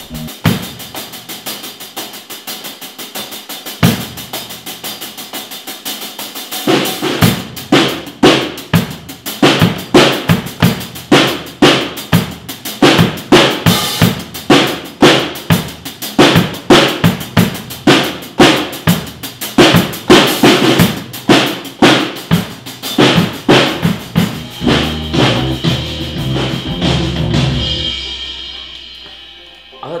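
Drum kit playing a take: light cymbal and drum strokes with one strong hit about four seconds in, then a full steady groove of kick drum, snare and cymbals from about seven seconds, dying away in a low ring near the end. It is a take the listeners judge consistent in tone.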